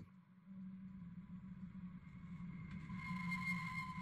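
Dark ambient music drone: a low steady hum that swells slowly, with thin high sustained tones fading in about halfway through.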